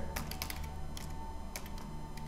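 Computer keyboard typing: scattered, irregular key clicks at a low level, with a faint steady tone underneath.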